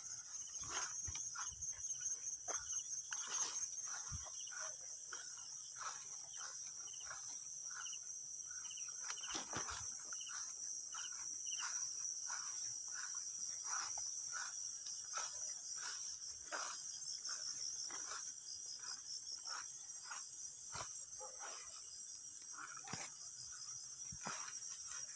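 A steady, high-pitched chorus of night insects such as crickets trilling, with irregular rustles and crunches of footsteps pushing through grass and undergrowth.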